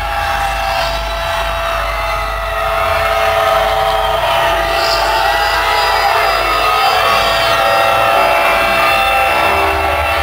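Concert intro over the PA: a sustained, layered electronic drone of several held tones over a deep rumble.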